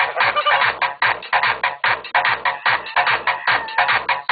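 Music with a fast, steady beat played loud through a car audio system's woofers and tweeters.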